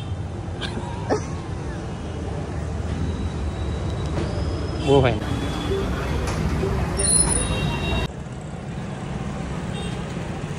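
Street traffic noise: a steady low rumble of vehicles, with a short voice about halfway through. The level drops suddenly about eight seconds in.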